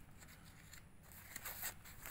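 Faint rustling of paper as the pages of old printed books and data sheets are handled and turned, a few soft scratchy rustles about a second in.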